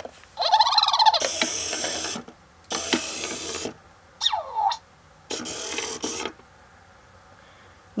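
Code & Go Robot Mouse toy driving across its tile grid, its motor whirring in three spells of about a second each as it steps from square to square. A short warbling tone comes before the first spell, and a single falling tone sounds between the second and third.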